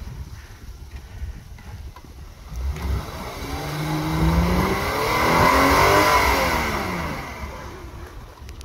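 Volvo XC90 SUV engine revving as it pulls through snow: from about three seconds in the revs climb steadily, peak, then ease back down, getting louder and then fading with them.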